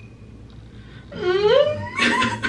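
A woman's staged crying: after about a second of quiet, one wailing sob that rises in pitch.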